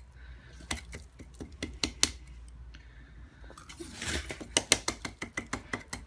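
Irregular clicks and taps of the plastic hose end of a vacuum cleaner being handled while debris is cleared from it, with a short rustle about four seconds in.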